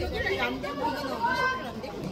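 Overlapping voices of several people talking and calling out at ringside.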